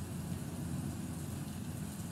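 Thunderstorm sound track playing from an Amazon Echo 4th-generation smart speaker: a steady low rumble with a faint hiss above it.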